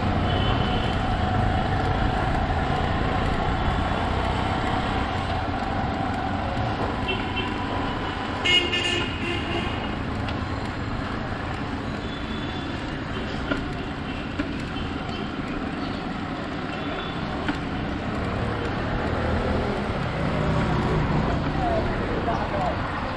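City street traffic heard from a moving bicycle, a steady low rumble of road noise. A vehicle horn toots briefly about eight seconds in.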